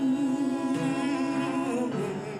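A singer humming one long held note with a slight vibrato, which falls away just before the end.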